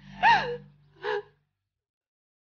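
A woman sobbing: a loud cry that falls in pitch, then a shorter sob about a second later.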